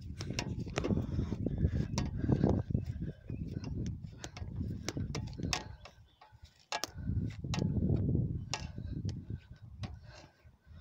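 Handling noise from a phone carried while walking: irregular sharp clicks and ticks over a low, surging rumble, fading out briefly about six seconds in.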